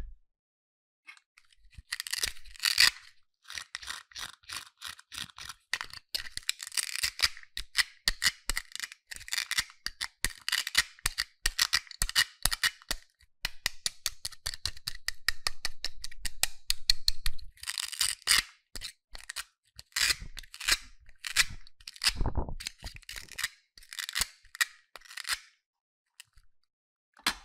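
Hook-and-loop (velcro) joint of a plastic cut-apart toy eggplant being pulled apart, giving a long, crackling rip that comes in several pulls, along with plastic toy handling.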